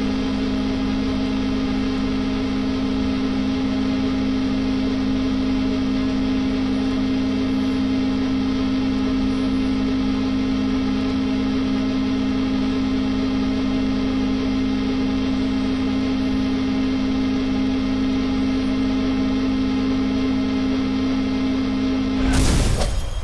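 A single electric drone held at one low pitch with a stack of overtones, dead steady and unchanging, that cuts off suddenly near the end; really annoying.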